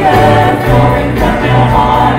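Worship team singing a gospel song in parts, backed by a live church band with steady bass notes under the voices.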